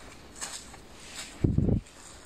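Footsteps on a dry grass lawn, faint and spaced out, with a short low rumble about one and a half seconds in.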